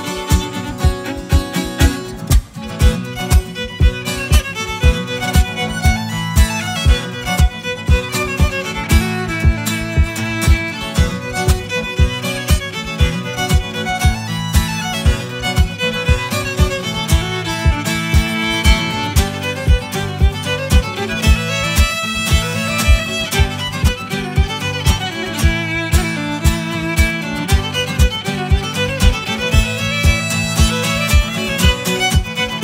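Fiddle playing a string-band tune over strummed acoustic guitar, with a low thump on the beat about twice a second.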